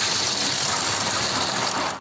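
Animated-series explosion sound effect of a huge energy blast: a loud, steady rush of noise that cuts off suddenly near the end.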